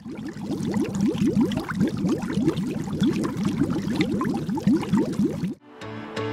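A bubbling, gurgling sound effect: a rapid run of short, low bubbly pops, several a second, that cuts off suddenly near the end.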